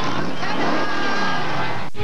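Sound effect from a TV channel bumper: several pitches sliding up and down together, with a machine-like quality. It cuts off abruptly just before the end.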